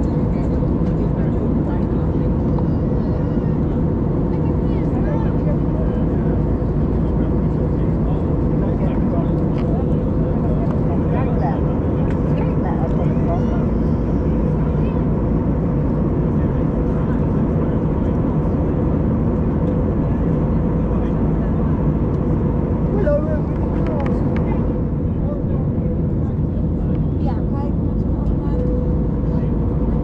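Steady cabin noise of an Airbus A320neo in flight: the even drone of its CFM LEAP-1A engines and airflow, with a steady hum running through it.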